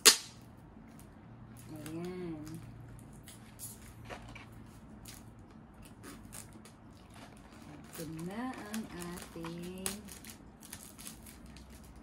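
A sharp snap at the very start, the loudest sound, then light clicks and crinkling as a plastic-wrapped cardboard product box is handled and unwrapped. A woman's voice sounds briefly about two seconds in and again for a couple of seconds around eight seconds in, with no clear words.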